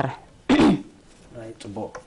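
A person's single short, loud vocal burst about half a second in, falling in pitch, amid the studio conversation.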